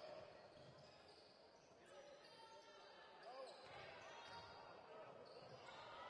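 Faint live court sound: a basketball being dribbled on a hardwood floor, with short sneaker squeaks and low voices in the hall.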